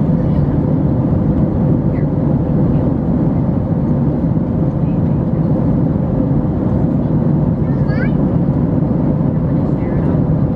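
Steady cabin noise of an airliner in flight: the jet engines and rushing airflow make an even, loud rumble weighted to the low end, with a faint steady hum above it.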